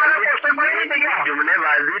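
Speech only: a man talking continuously, the sound thin and narrow like a recorded phone call.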